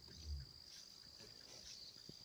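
Insects chirring in a steady, high-pitched drone, with a soft low thump about a third of a second in.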